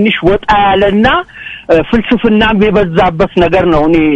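Speech: a person talking, with a brief pause a little after a second in.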